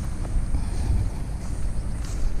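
Wind rumbling on the microphone, a steady low buffeting with no other distinct sound.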